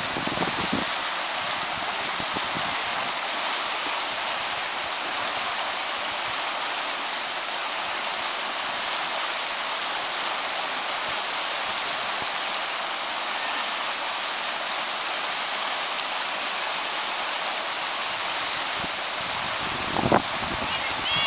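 River rapids rushing: a steady, even hiss of churning whitewater that holds level throughout, with little deep rumble.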